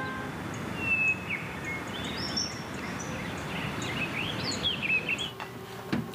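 Birds chirping outdoors: several short, separate calls, some sliding up and down in pitch, over a steady background hiss of outdoor ambience.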